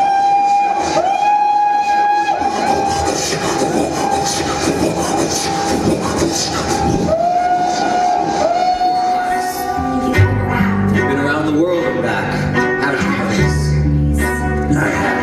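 A train evoked on stage: whistle-like calls that scoop up into a held pitch, sounding again and again over a chugging rattle. About ten seconds in, bass notes and other instruments come in as band music.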